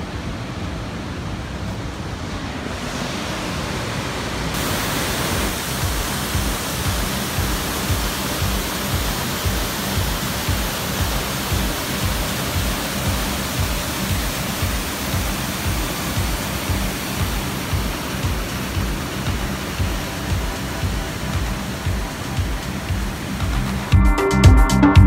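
A waterfall's steady rush of falling water, growing louder and fuller about four seconds in. Background music with a steady low beat, about two a second, runs underneath.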